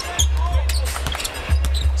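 Live arena sound of an NBA game: a basketball bouncing on the hardwood court and short sharp knocks from play, over arena music with deep, held bass notes.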